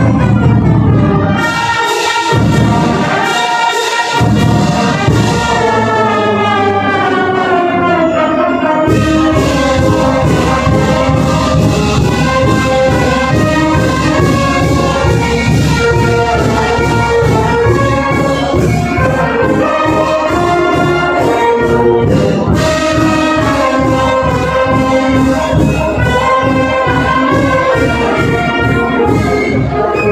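Marching brass band playing live: trumpets, trombones and sousaphones over drums and cymbals. Held brass chords open the passage, and from about nine seconds in a steady drum beat drives under the melody.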